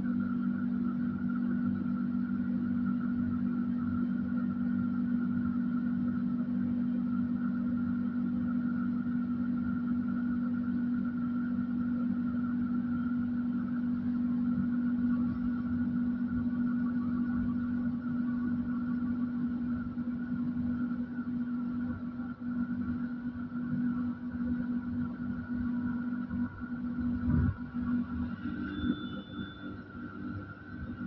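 Steady electrical hum of a Moderus Gamma LF tram standing at a stop, its on-board equipment running while the vehicle is stationary. A single knock comes near the end, after which the hum thins and changes, and a brief high beep follows.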